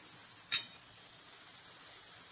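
A metal spatula clinks once against the kadhai about half a second in, over the faint steady sizzle of masala and peas cooking in a little water.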